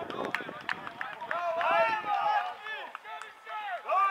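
Several players shouting and calling to one another across the pitch during a football match, overlapping voices that rise and fall, loudest about halfway through. A few sharp knocks in the first second.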